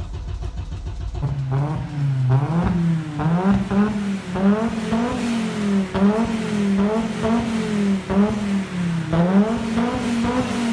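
Audi five-cylinder 20-valve turbocharged engine heard at the exhaust. It runs low for about the first second, then is revved in repeated quick throttle blips, the pitch rising and falling more than once a second.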